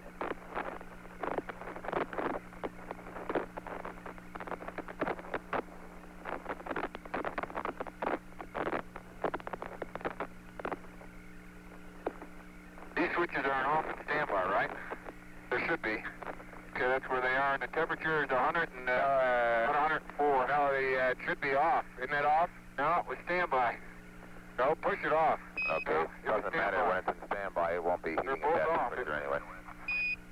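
Apollo mission radio loop audio: crackling transmission noise over a steady low hum. From about halfway, indistinct, garbled voice-like transmission comes through.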